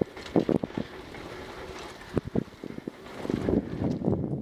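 Mountain bike ridden fast down a dirt trail: tyres rolling on dirt with wind buffeting the microphone, and sharp knocks and rattles from the bike over bumps, several in the first second and a couple more a little after two seconds in.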